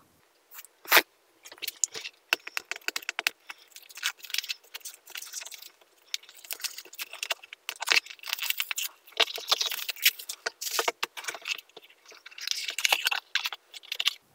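Clear plastic shrink wrap being picked at and peeled off a small cardboard box: a run of crinkling crackles.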